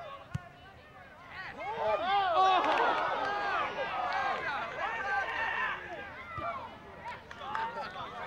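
A soccer ball kicked with a single thud, then many spectators and players shouting and cheering together for about four seconds as the shot goes in on goal, fading toward the end.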